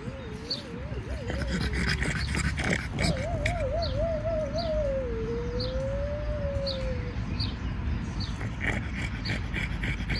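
A dog whining: a long, wavering whine that warbles up and down, breaks off about two seconds in, starts again a second later and fades out around seven seconds in. A bird repeats a short high chirp every second or so.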